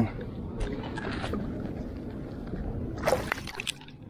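Light water splashing and handling noise around a freshly caught rainbow trout held over the water, with a brief louder scuffle about three seconds in.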